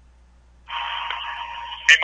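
Conference-call telephone line: near silence, then about two-thirds of a second in a caller's line opens with a steady hiss and a faint steady tone, before a man says "Hey" right at the end.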